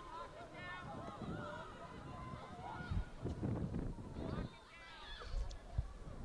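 Women's voices shouting and calling out across a soccer pitch, short high calls one after another, with dull thumps about three seconds in and near the end.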